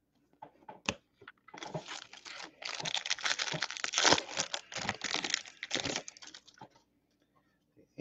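Crinkly wrapping handled by hand: a single click about a second in, then a dense crackling, crinkling rustle lasting about five seconds before it stops.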